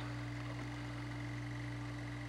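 Steady low electrical hum with a faint thin high whine above it, unchanging throughout.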